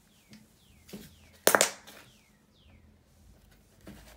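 Soft clay slime squished and stretched by hand, giving scattered wet clicks and pops, with one loud pop about a second and a half in.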